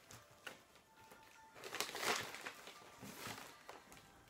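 Faint background music under the rustling and crackling of dry orchid potting mix being worked by gloved hands into a plastic pot, loudest in two swells, one around the middle and a weaker one near the end.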